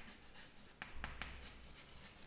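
Chalk writing on a chalkboard: faint scratching with a few light taps of the chalk as words are written.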